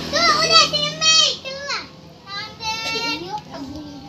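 Young girls talking in high-pitched voices, a run of short excited phrases that trail off in the last half second.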